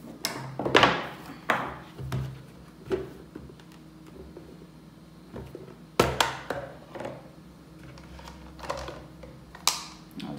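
Plastic knocks and clicks from an electric drip coffee maker being handled, its lid pressed down and flipped open, in scattered single strokes with short quiet gaps between.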